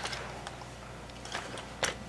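Quiet room tone with a faint steady low hum, and a single light click near the end.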